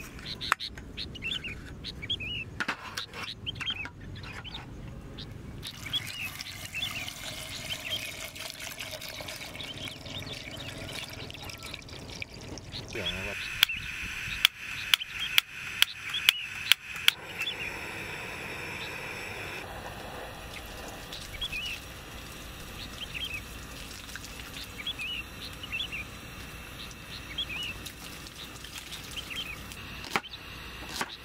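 Birds chirping, and about halfway through, a run of about eight sharp clicks over three or four seconds from the piezo igniter of a portable butane camping stove as its knob is turned to light the burner.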